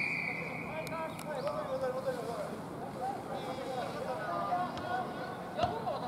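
A referee's whistle blast, one steady shrill note, cutting off about half a second in; then players' distant shouts and calls across the pitch.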